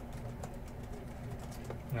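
Quiet room tone: a low steady hum with a couple of faint clicks, then a man's voice starts right at the end.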